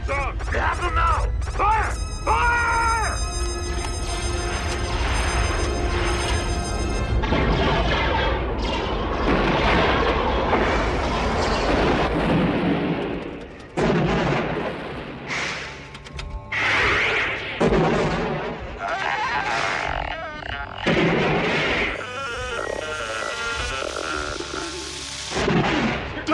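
Film soundtrack: dramatic music, then a series of explosions from about halfway through, several separate blasts each followed by a rumbling decay.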